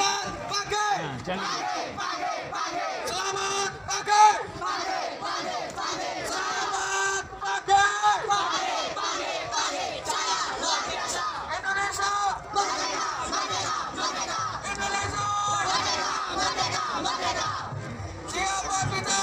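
A team of young people chanting and singing a yel-yel team cheer together in unison, with louder shouts about four and eight seconds in.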